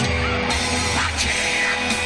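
Rock band playing live: electric guitar, bass and drums together, with cymbal hits on the beat.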